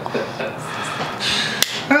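A pocket lighter struck once, giving a single sharp click near the end.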